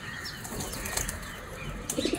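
Small birds chirping in a quick run of short high notes, with a couple of faint clicks.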